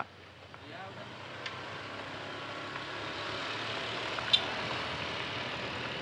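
Honda motorbike running at low speed on a ride, its engine hum under wind and tyre noise that grows steadily louder as it picks up speed. A single brief click sounds about four seconds in.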